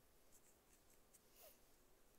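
Near silence, with a few faint, short rustles of embroidery thread being drawn through cotton fabric stretched in a hoop. The loudest rustle, with a brief faint squeak, comes about one and a half seconds in.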